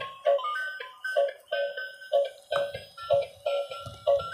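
Built-in electronic tune from a transparent light-up gear toy car: a tinny beat of about three pulses a second with a simple melody of beeping notes over it, and some low rumbling in the second half.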